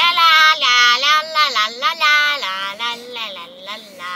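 A young boy singing loudly in a high voice, holding and sliding long notes, fading away near the end.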